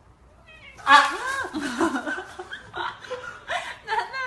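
A cat meowing: a string of loud calls that rise and fall in pitch, starting about a second in, while a bare foot presses down on it.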